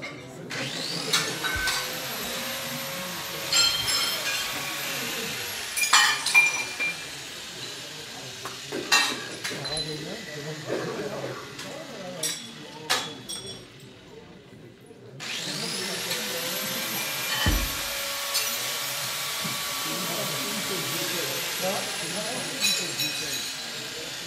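A handheld power-tool motor whining up to speed and running for about ten seconds, its pitch sagging slowly as it works, then stopping and starting again for a second run. Scattered metallic clinks and knocks of scrap sound over it.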